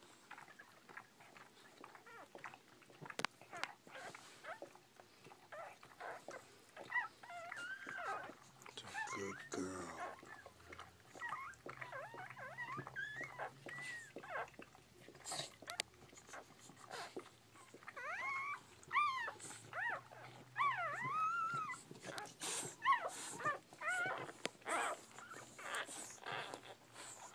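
Newborn bull pei puppies squeaking and whimpering in short, high-pitched, rising-and-falling cries, in two bouts, with scattered clicking suckling sounds while they nurse.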